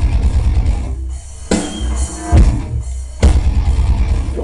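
Heavy rock band playing live with drum kit and distorted guitar, loud. The band plays a stop-start passage: hard accented hits land about a second apart, with brief drop-outs between them.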